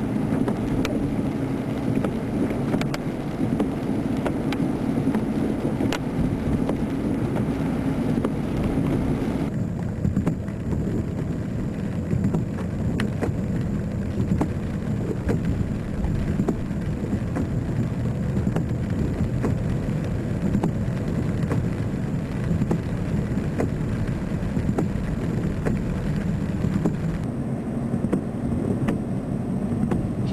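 A steady low rumble under a haze of faint crackling ticks. Its tone dulls suddenly about nine seconds in and shifts again near the end.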